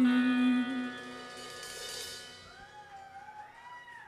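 A live rock band finishing a song: the last held note and chord fade out over a couple of seconds, with a cymbal ringing and dying away.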